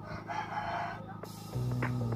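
A rooster crowing once, about a second long, followed near the end by background music with a steady bass coming in.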